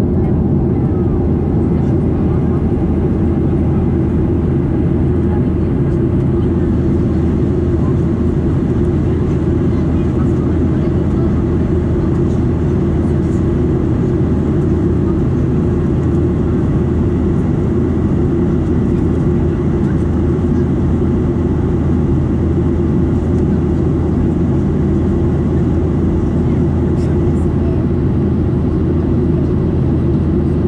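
Boeing 737-800 in flight, heard from inside the passenger cabin: the steady drone of its CFM56-7B turbofans and the rushing air, even and unchanging.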